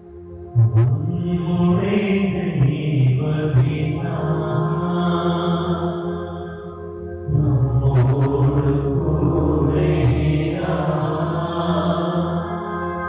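Slow, chant-like devotional music over a sustained drone. One long phrase enters about half a second in and a fuller one about seven seconds in.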